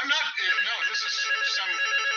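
A mobile phone's ringtone sounding as an incoming call, a steady electronic tone with a pulsing note over it, under a man's voice; it cuts off near the end.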